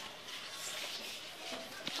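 Faint crinkling and rustling of a clear plastic sheet being handled on a tabletop, with a single sharp tap near the end.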